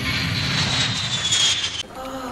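Jet airliner flyby sound effect: a rushing noise with a high whine that slides down in pitch as it passes, cutting off abruptly just before two seconds in.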